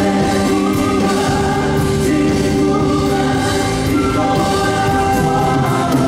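Live band music with singing: an Argentine folk group on guitars, drums and keyboard, heard from the audience in a theatre.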